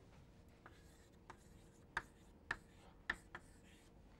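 Chalk writing on a blackboard: a series of short, faint taps and scrapes as a word is written.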